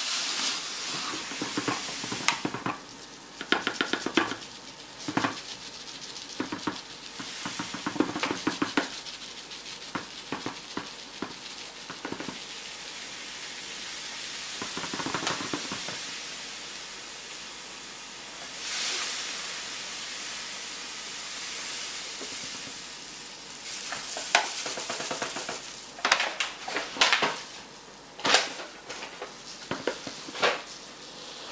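Granulated sugar pouring through a plastic funnel into an empty 5-litre plastic bottle: a steady sandy hiss broken by clicks and rustles, louder in bursts near the end.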